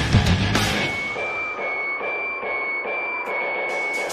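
Live symphonic metal band playing: full band with heavy drums for the first moment, then the low end drops out under a second in, leaving a held high note over a lighter, evenly pulsing backing.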